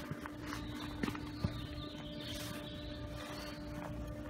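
Faint rustle and soft clicks of camouflage uniform trouser fabric being handled and tucked into a blousing strap, over a steady low hum.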